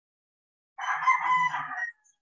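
A rooster crowing once, a loud call about a second long that starts just under a second in.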